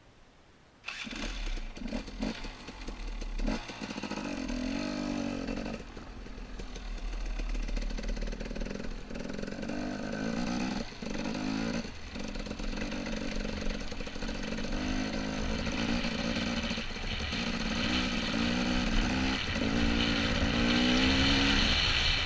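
Dirt bike engine revving up and down as it is ridden along a dirt trail, heard close to the helmet camera with wind noise over it. It cuts in suddenly about a second in, and the throttle shuts off briefly a few times before picking up again.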